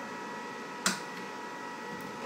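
EcoFlow Delta Max portable power station humming steadily while fast-charging from mains at about 1,600 watts input, a constant whine of several steady tones. A single sharp click a little before the middle.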